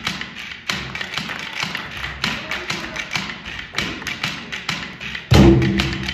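A drum circle of hand drums, cajóns and congas among them, playing a busy run of quick taps and slaps. About five seconds in the group gets much louder, with deep, ringing drum strokes.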